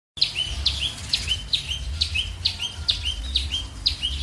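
A bird calling over and over, about twice a second, each call a short high note falling into a lower held note. A low rumble runs underneath.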